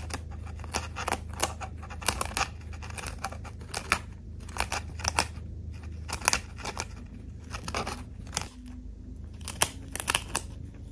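A chinchilla biting and chewing a loquat leaf: quick, irregular crisp crunches, several a second, with a short lull near the end.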